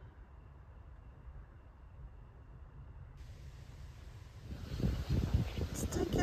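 Wind rumbling on the microphone outdoors, low and steady at first, then gusting louder and more unevenly in the last second or two.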